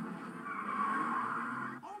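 Car tyres squealing in a skid for about a second and a half, heard through a television's speaker.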